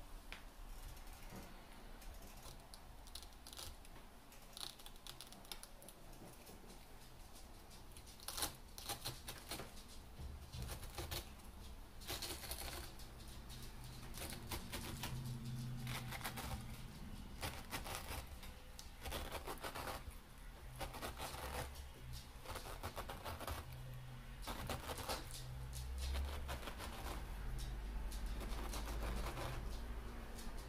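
Stainless steel pineapple corer-slicer being twisted down into a whole pineapple, its blade cutting through the fruit with bursts of crunching and rapid small clicks, busier from about a third of the way in.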